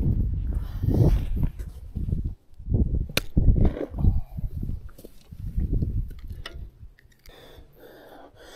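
Low, uneven rumbling of wind and handling noise on a body-worn camera microphone as the wearer moves, with a sharp click about three seconds in and a few fainter ticks.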